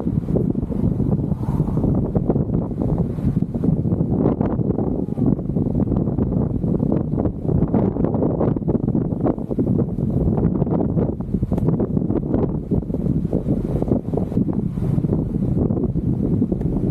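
Wind buffeting the microphone, a steady low rushing noise that flutters in level.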